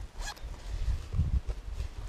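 Jacket chest-pocket zipper being pulled open: a short zip soon after the start, followed by low handling noise of the fleece jacket.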